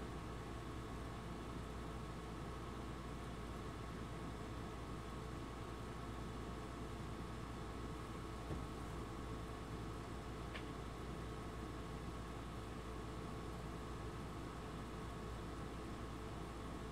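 Quiet room tone: a steady hiss with a faint electrical hum, broken only by a small click about halfway through.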